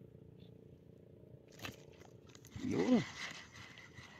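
A man's short wordless exclamation, one pitched 'oh'-like call that rises and falls about three seconds in, followed by rustling as he handles the fishing rod and spinning reel. Before it there is only faint background with a single click.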